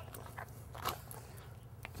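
A dog faintly biting and mouthing its reward toy: a few soft, scattered chomps and scuffs.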